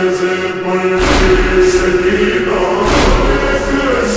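Slowed-down, reverb-heavy noha: voices chanting a lament on long held notes. A deep thump comes about a second in and another near three seconds.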